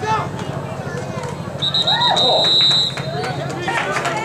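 A referee's whistle blown once, a steady high-pitched blast lasting a little over a second, over spectators talking and shouting.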